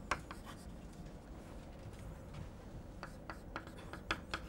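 Chalk tapping and scraping on a blackboard as short strokes are written: faint, with a few sharp clicks near the start and again near the end.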